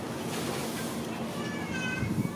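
Long-tailed macaque giving a high-pitched cry, starting about a second and a half in.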